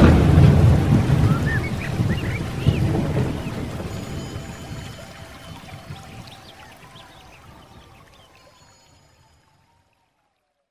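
Closing sound bed of a low rumble like distant thunder, with rain-like noise and faint music. A few short chirps come about two seconds in. It all fades out steadily, gone after about nine seconds.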